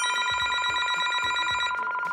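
A telephone ringing: one long, trilling ring.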